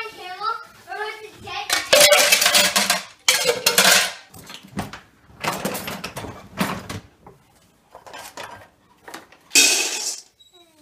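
Plastic dishes and cutlery clattering in a dishwasher rack, in several loud bursts. Near the end comes a short rush of dry kibble being poured into a bowl.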